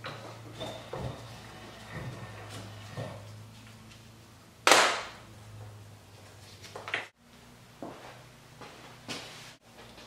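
Metal clicks and knocks from a double cardan joint's centering yoke being handled in a steel bench vise and lifted out. There is one sharp clack about halfway through, over a low steady hum.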